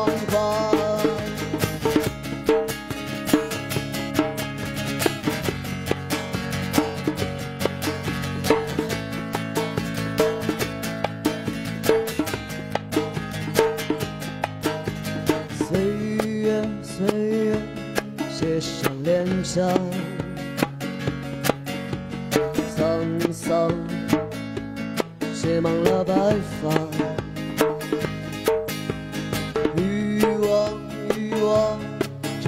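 Live acoustic music: a man singing over a strummed acoustic guitar, with hand-drum accompaniment.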